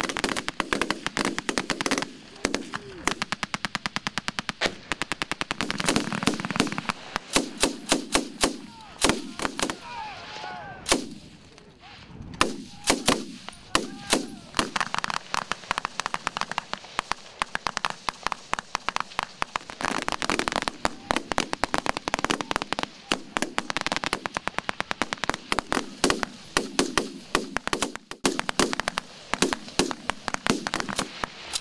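Live small-arms fire from several rifles and machine guns: many sharp shots, some single, many in rapid strings and bursts, overlapping almost throughout, with a brief lull about ten seconds in.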